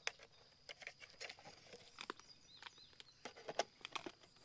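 Scattered light plastic clicks and taps from a cellular trail camera's battery tray and housing being handled, as the tray of AA cells is fitted back into the camera.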